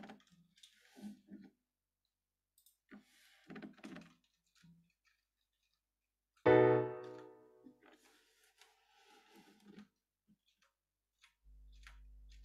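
A seventh chord in a computer-generated piano sound is struck about six and a half seconds in and rings out, dying away within about a second. A few short, quieter sounds come before it.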